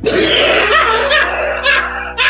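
Audience laughing at a joke, over a steady background music bed.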